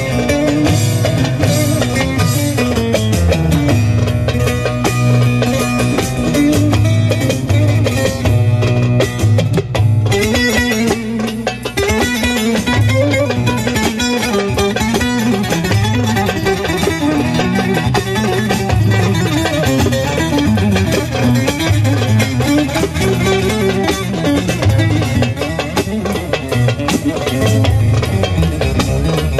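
Instrumental passage of Turkish folk music led by an electric bağlama (long-necked saz), with darbuka and keyboard backing and a low repeating bass line.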